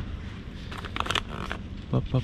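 A few quick crinkles of coffee-bag packaging being handled, about a second in, over a low steady background hum.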